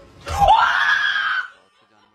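A woman screaming once in fright, a single loud high-pitched scream lasting a little over a second that cuts off sharply.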